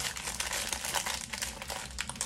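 Plastic packaging crinkling as it is handled, a dense run of small crackles.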